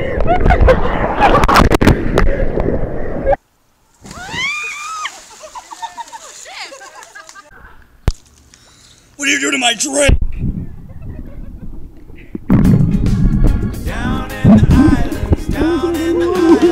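Loud rush of ocean surf and splashing water, with knocks on the microphone, cut off abruptly about three and a half seconds in. After that come voices: a short high-pitched vocal phrase just before ten seconds, then talking and laughter from about twelve and a half seconds.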